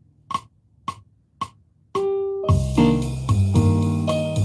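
Four evenly spaced count-in clicks about half a second apart, then a bossa nova begins about two and a half seconds in: Roland GO:PIANO digital piano chords over a bass line and light percussion backing.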